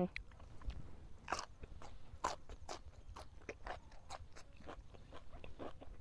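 Close-up crunchy chewing of crisp raw vegetables, sharp crunches coming about three times a second from about a second in.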